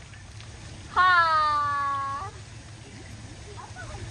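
A person's voice giving one long, drawn-out sing-song call about a second in, lasting just over a second with its pitch sagging slightly, like a name being called out.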